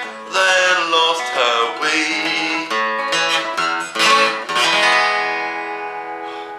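Acoustic guitar strummed under a neck-rack harmonica playing the closing instrumental of a country song, dying away near the end.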